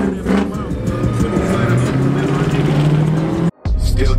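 Car engine running and slowly gaining revs as it accelerates, heard from inside the cabin. About three and a half seconds in it cuts off suddenly and hip hop music starts.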